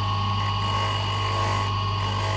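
Electric bench polishing motor running with a steady hum and whine as a small metal ring is held against its spinning polishing wheel, adding a hiss from about half a second in for a second or so.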